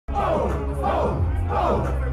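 Concert crowd shouting and chanting, many voices at once, over a loud, deep bass beat from the PA.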